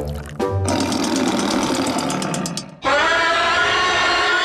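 Cartoon sound effects: a liquid pouring and bubbling sound with a fast run of clicks, then, about three seconds in, a sudden loud, long, held scream from a cartoon character.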